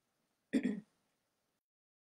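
A woman clears her throat once, briefly, about half a second in.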